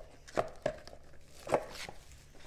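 About four short taps and clicks from cardboard card boxes and graded cards being handled and set down on a table.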